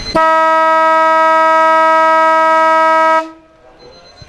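Football ground siren sounding one long steady blast of about three seconds, then cutting off sharply: the siren signalling the end of play.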